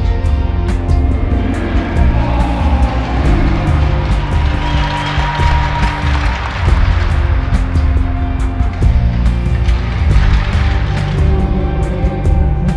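Background music with a strong, pulsing bass and sustained chords.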